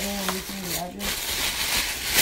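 Plastic bag and tissue paper rustling and crinkling as a wrapped gift is handled and opened, with a brief wordless murmur from a woman in the first second.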